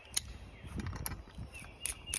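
Climbing rope and a locking carabiner being handled while a clove hitch is tied to the master point: soft rope rustling with a few light ticks, and two sharp clicks, one just after the start and one near the end.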